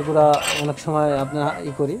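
A man talking over light clinks of metal hand tools being picked up from a pile on a tarp.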